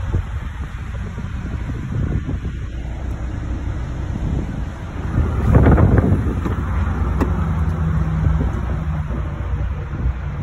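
Wind rumbling on a phone microphone, mixed with handling noise, swelling into a louder rush a little past halfway.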